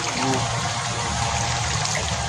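Water trickling and dripping steadily off a fishing net as it is lifted out of a shallow creek.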